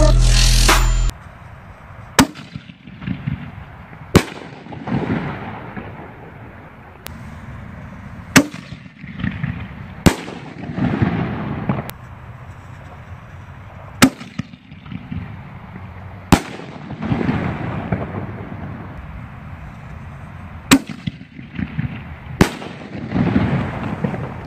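Pyro Demon 'Demon Shells' 60 g canister aerial shells firing: a string of about eight sharp, loud bangs two to four seconds apart, from the shells' lift charges and breaks. Each bang is followed by a rumbling echo and crackle. Background music cuts out about a second in.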